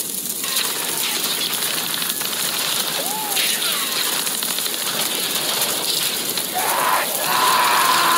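A hiss- and crackle-filled sampled recording with faint voices, not the band's music; a louder, drawn-out cry comes in near the end.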